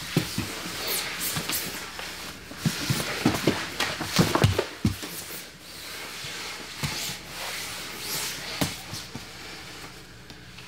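Two grapplers scrambling on foam gym mats: irregular dull thumps of bodies, hands and feet hitting the mat, with skin and fabric scuffing and sliding. The knocks come thickest about four to five seconds in and thin out toward the end.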